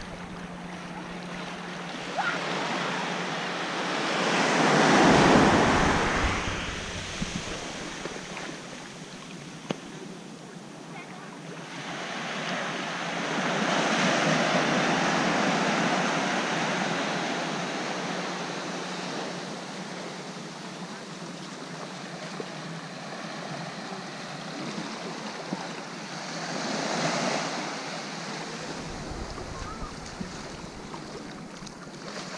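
Small surf waves breaking and washing up a sandy beach at the water's edge, close to the microphone. The wash swells three times: loudest a few seconds in, a longer, broader swell around the middle, and a smaller one near the end.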